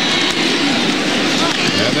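Stadium crowd noise: a dense, steady roar of many voices under a football telecast, with a commentator starting to speak at the very end.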